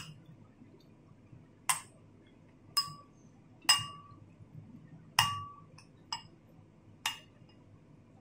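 Metal spoon clinking against a ceramic bowl as it scoops up rice porridge: six sharp, ringing clinks at uneven intervals about a second apart.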